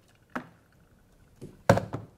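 Hard objects knocking on a bench while a plunger coffee press is handled: a soft tap early, then a sharp, louder knock near the end.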